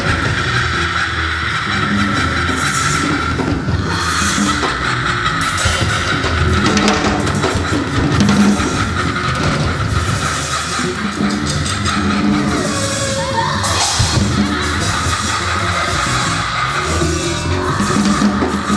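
Loud live avant-garde music: a woman singing over a rock-style band, with a long held high note through most of the first two-thirds, a sliding pitch near the two-thirds mark, and a pulsing low beat underneath.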